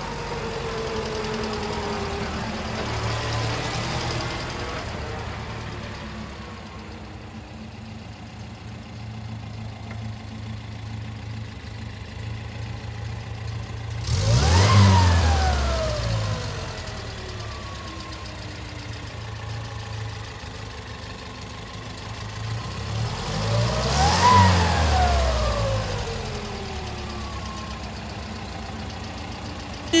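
1974 Steyr-Puch Pinzgauer 710K's air-cooled four-cylinder engine running as the vehicle is driven, its pitch falling at the start. It is revved twice, about halfway through and again near the end, each rev rising sharply and then dying away over a few seconds.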